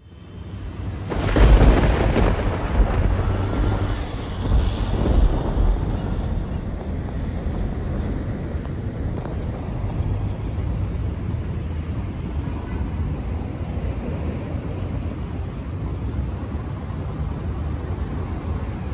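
Wind buffeting the microphone outdoors: deep, gusty rumbling that is strongest about a second and a half in and again around five seconds, then settles into a steady low rumble.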